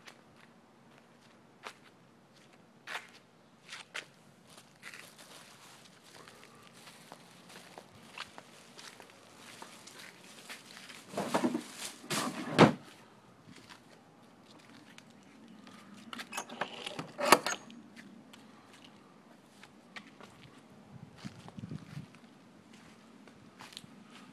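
A blue plastic wheeled trash bin being handled, with scattered footsteps, knocks and rustles. There are two louder clusters of knocks, one about halfway through and one about two-thirds of the way in, as the bin lid is worked and the bag is put in.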